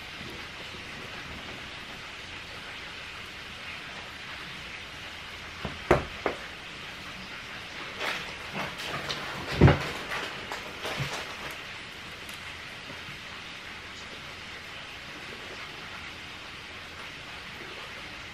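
Steady background hiss, broken in the middle by a few soft knocks, one louder thump and a short stretch of light crackling.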